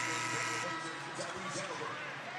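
A held electronic chord of several steady tones that cuts off about two-thirds of a second in, followed by faint speech.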